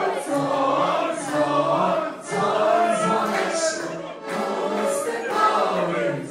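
A group of people singing together in chorus, a toast song sung with glasses raised, with short breaths between phrases about two and four seconds in.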